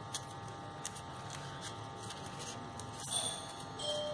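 Faint crinkling and ticking of crepe paper being wound around a wire by hand, over a steady electrical buzzing hum, with a slightly louder rustle about three seconds in.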